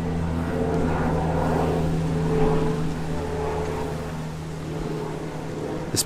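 A steady low engine hum with a few held tones, fading about four seconds in.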